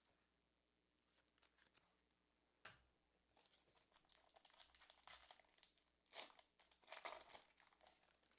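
Faint crinkling and tearing of a foil trading-card pack being torn open by hand, after a single tick a little under three seconds in.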